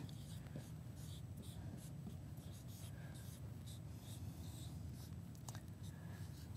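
Dry-erase marker writing on a whiteboard: a run of short, faint scratchy strokes as letters are written, over a steady low room hum.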